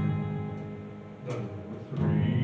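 Instrumental introduction to a song, with plucked-string chords: one struck at the start that rings and fades, and another about a second and a quarter in.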